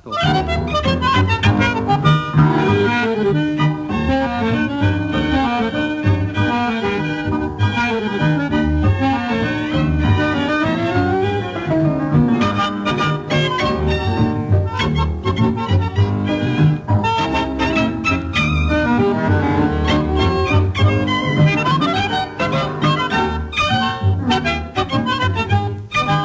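Tango quintet playing a milonga without singing: double bass keeping a steady pulsing beat under violins and bandoneon.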